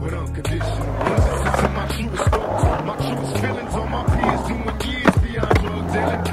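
Skateboard wheels rolling on concrete, with several sharp clacks of the board, over a hip-hop backing track with a steady bass line.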